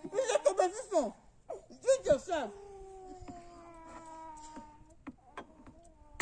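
Women laughing and making wordless vocal sounds, then a long held vocal note of about two and a half seconds that slowly sinks in pitch.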